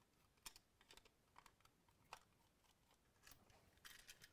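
Near silence broken by about half a dozen faint small clicks, the loudest about half a second in. They come from a screwdriver working the terminal screws of an old double socket as its wires are freed.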